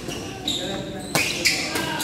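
Badminton rally: sharp racket hits on the shuttlecock, the clearest a little after a second in, and brief squeaks of court shoes on the gym floor, over the chatter of spectators.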